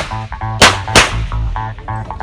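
Two pistol shots fired in quick succession, about a third of a second apart, during a practical shooting stage, over background music with a steady beat.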